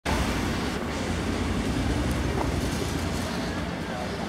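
Street traffic: a car driving past close by, a steady low rumble of engine and tyres on the road, with the noise of a busy street behind it.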